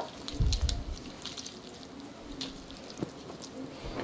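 Gloved hands pulling apart smoked beef shoulder clod on a wooden cutting board: soft handling noise of the meat with scattered small clicks, and a dull low thump about half a second in.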